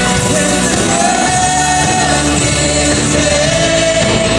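Live band performance: a male lead vocal, with a woman singing backup, over electric guitars and drums, the singer holding long notes.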